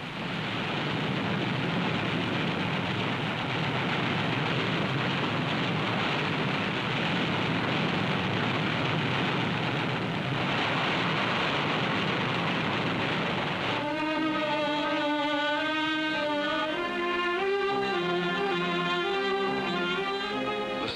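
A dense, steady roar of battle noise, the film's sound track of anti-aircraft gunfire, runs for about fourteen seconds. Then orchestral music led by strings takes over.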